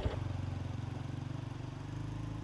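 Small step-through motorbike engine running steadily at low speed as the bike crawls up a muddy dirt track, a low, even note with fine rapid firing pulses.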